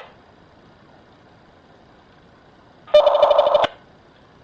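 Two short bursts of dPMR digital radio signal from a Kirisun S780 call, heard through a scanner: one cuts off right at the start and a second, under a second long, comes about three seconds in, with faint hiss between. The call is trying to establish contact with the other radio and failing.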